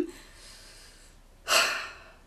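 A woman's short, audible intake of breath about one and a half seconds in, after a second of quiet.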